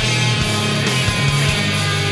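Hardcore punk recording: distorted electric guitars and bass holding low sustained chords over drums.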